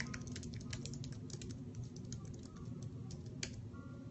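Typing: quick, irregular clicks of fingers on keys, with one louder click about three and a half seconds in, over a low steady background hum.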